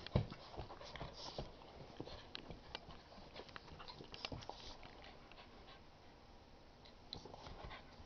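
An English x Olde English Bulldog puppy and a basset hound x pug play-wrestling at close range: faint scuffling, mouthing clicks and panting, with a thump just after the start.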